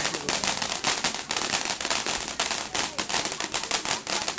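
Ground fountain firework spraying sparks with a rapid, dense crackling: many sharp pops a second, without a break.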